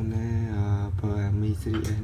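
A person's voice drawing out a long vowel at one steady pitch for about a second, then shorter held sounds that bend in pitch near the end, over a steady low hum.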